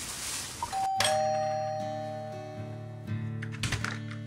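Doorbell chime ringing two notes about a second in, a higher one then a lower one, both fading slowly, with music playing under it.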